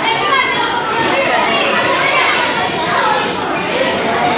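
Many schoolchildren talking at once in a large hall: a steady din of overlapping young voices.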